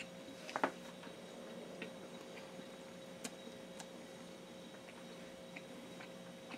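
Faint, scattered mouth clicks from chewing a bite of cheeseburger, loudest in a small cluster about half a second in, over a steady low hum.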